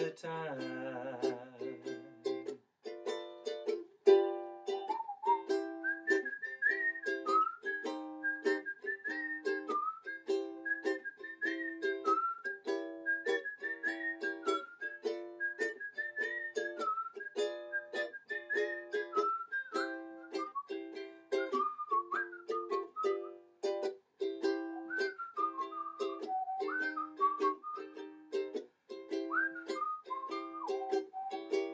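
Ukulele strummed in a steady rhythm of chords, with a whistled melody carried over it from about five seconds in.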